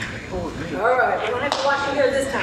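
Speech: a person talking, with one sharp knock about one and a half seconds in.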